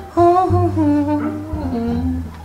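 A person humming a short tune that steps downward in pitch, over light background music.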